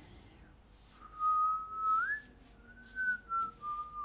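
A person whistling a short, wandering tune: a clear held note starting about a second in, a quick rise in pitch at about two seconds, then a few shorter notes stepping slightly lower.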